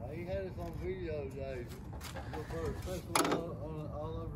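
Soft background talk from people nearby over a steady low rumble, with a short, sharper sound about three seconds in.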